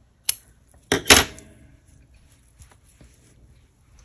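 Scissors snipping off yarn ends: one sharp click, then two more about a second later, the last with a short metallic clatter, followed by faint handling ticks.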